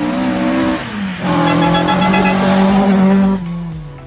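Ford Escort rally car with a Pinto four-cylinder engine driven hard on a gravel stage: the engine runs at high revs, dips briefly about a second in, comes back on the throttle louder, then falls in pitch and level near the end as the car heads away.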